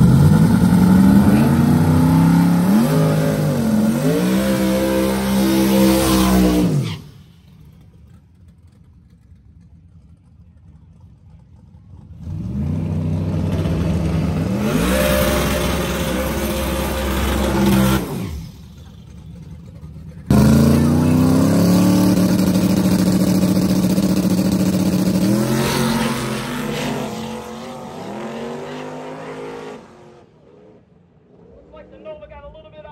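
Drag race car engines at full throttle down a drag strip, their revs climbing and dropping repeatedly as they shift through the gears. There are three separate runs, each starting or stopping abruptly, with quieter stretches about 7 s and 18 s in.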